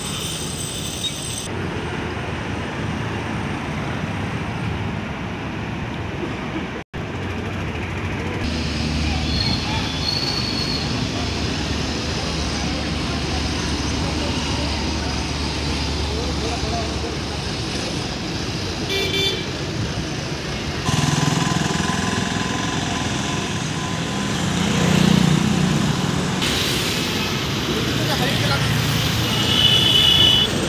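Busy road traffic running steadily, with vehicle horns tooting now and then and voices in the background.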